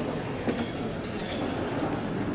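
Steady room noise in a crowded hall, with a faint murmur of voices and no clear words.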